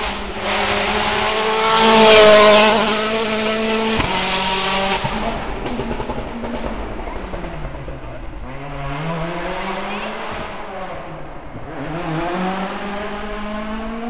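Citroën World Rally Car's turbocharged four-cylinder engine passing close at speed on a tarmac stage, loudest about two seconds in. Its engine then rises and falls in pitch through the gears as it drives off into the distance.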